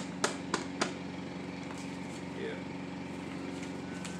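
A paper dollar bill snapped taut between two hands three times in quick succession in the first second, sharp cracks over a steady low electrical-sounding hum.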